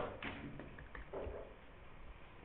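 Quiet room tone with a few faint, light taps of a stylus on a tablet screen as the numbers are written.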